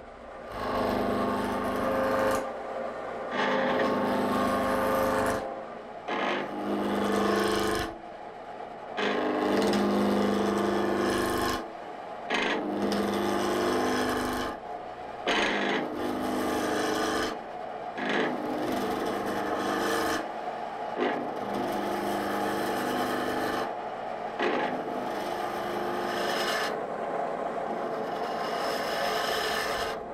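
Roughing gouge cutting a square maple blank spinning on a wood lathe, rounding it into a cylinder. The cuts come as about ten passes of two to three seconds each, with short breaks between them.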